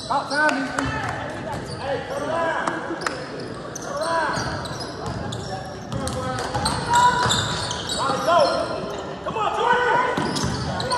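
Sneakers squeaking on a hardwood gym floor in short, frequent chirps, with a basketball bouncing and voices calling out, all echoing in a large gym.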